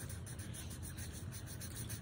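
Sharpie felt-tip marker rubbing in short strokes on paper as a small shape is coloured in, a faint, steady scratching.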